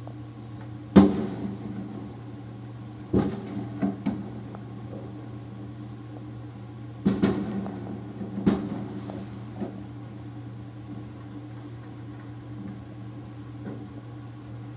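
A steady low hum with about eight sharp knocks at irregular intervals: the loudest about a second in, then small clusters around three to four seconds and seven to eight and a half seconds in, and a faint last one near ten seconds.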